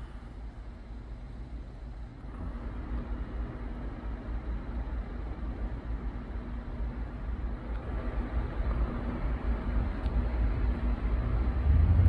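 Steady low outdoor rumble with a faint hum, growing gradually louder.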